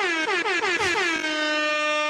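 Air horn sound effect: one long blast that slides down in pitch over its first second, then holds steady.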